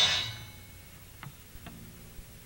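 A heavy metal band's final chord rings out and dies away within about half a second. Then it goes quiet, with two faint clicks a little under half a second apart.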